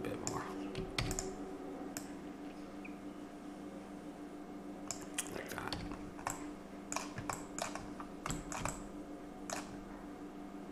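Keystrokes on a computer keyboard and mouse clicks: scattered sharp clicks, coming thicker in the second half, over a steady low hum.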